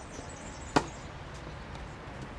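A tennis racket striking the ball once: a single sharp pop about three-quarters of a second in, during a rally.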